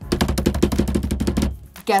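Hands drumming fast on a desktop, a quick drumroll of taps that stops about three-quarters of the way through.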